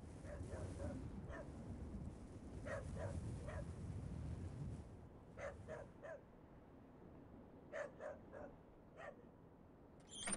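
A dog barking in short runs of a few barks, every couple of seconds, over a low rumble that fades about halfway through.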